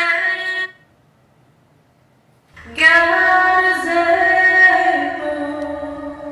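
Solo female voice singing a cover: after a brief held sound at the very start and about two seconds of near silence, she comes in on a long sustained note that wavers slightly, with the echo of a staircase.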